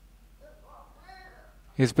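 Mostly quiet, with a faint, short, wavering pitched vocal sound in the middle. A voice starts speaking near the end.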